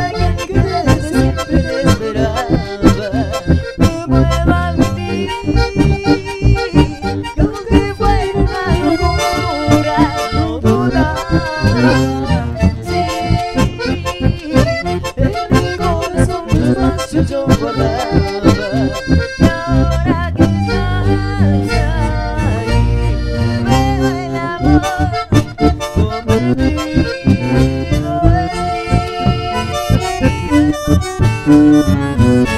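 Live chamamé band playing an instrumental passage: bandoneón and button accordion carry the melody over electric bass and acoustic guitar, with a steady beat and no singing.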